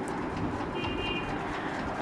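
Steady background noise with a pigeon cooing, and a brief high tone about a second in.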